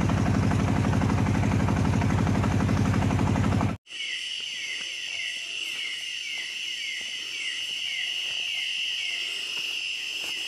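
A boat's motor running steadily, cut off abruptly about four seconds in. Night insects follow: a steady high-pitched trill with short chirps repeating about twice a second.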